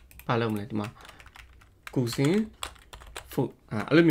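Computer keyboard typing, the keystrokes coming in quick irregular runs, with a voice speaking three short phrases over it.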